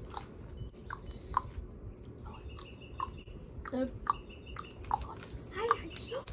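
Crinkling and crackling of a small plastic candy wrapper, a Skittles pack, handled and torn open by hand in small scattered bursts.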